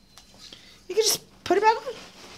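Children's voices: a short, breathy vocal burst about a second in, then a brief child's vocal sound near the end.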